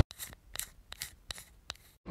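A run of about eight short, sharp clicks or snips, unevenly spaced and fairly faint. They sound like a section-transition sound effect.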